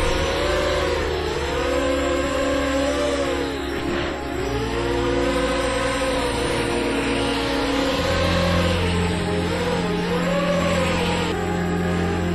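Electronic music with a steady bass line, over the whine of a ZMR250 quadcopter's brushless motors rising and falling in pitch with the throttle. The whine dips sharply and recovers about four seconds in.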